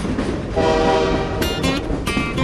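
A train horn sounds a steady chord over a noisy train sound effect. Strummed acoustic guitar music comes in about one and a half seconds in.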